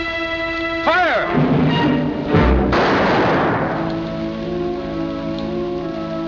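Orchestral film score with sustained chords and swooping figures, cut through about two and a half seconds in by a single loud pistol shot whose echo dies away over a second or so.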